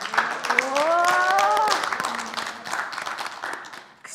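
Applause, a dense patter of many hands clapping that thins out and fades near the end, with one voice giving a long rising call over it about a second in.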